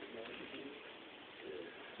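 Quiet room noise with faint, indistinct murmuring voices in a pause between spoken answers.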